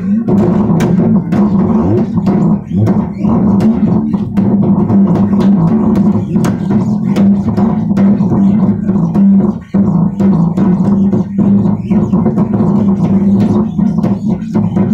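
Electric bass guitar being played, a continuous line of low plucked notes with sharp attacks, briefly breaking off about two-thirds of the way through.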